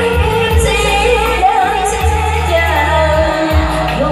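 A woman singing a Vietnamese song through a microphone and PA over an accompaniment with steady bass notes.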